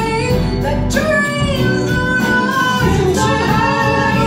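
Live band playing a soul cover, with female lead vocals over piano, electric guitar and bass guitar.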